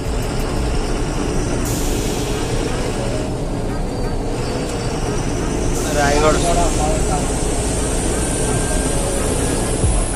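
Steady engine and road rumble of a truck driving along a highway, with a held drone running under it. A voice is heard briefly about six seconds in.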